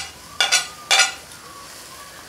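A metal spoon clinks twice, about half a second apart, as chopped garlic is scraped off a plate into a stainless steel wok. Food fries with a faint steady sizzle underneath.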